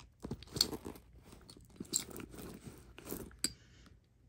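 Hands rummaging inside a leather handbag: irregular rustling with small clicks and knocks as the items inside are moved about and a tube of hand cream is drawn out.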